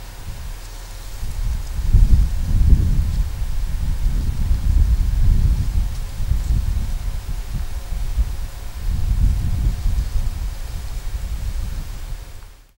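Wind buffeting the microphone: a low, irregular rumble that swells about two seconds in and then rises and falls in gusts.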